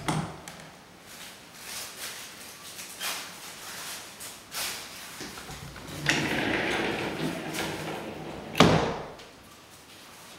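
Wood-grain sliding closet door slid open by hand: a rolling rumble of about two and a half seconds, ending in a sharp knock as the door hits its stop. Lighter knocks and clicks come before it, including one at the very start.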